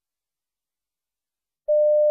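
Silence, then near the end a single steady electronic beep tone starts: the signal tone that marks the start of each recorded piece in a Cambridge English listening test.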